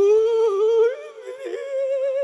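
A man's mock crying: one long, wavering wail into a microphone that steps up in pitch about halfway through, a comic imitation of weeping.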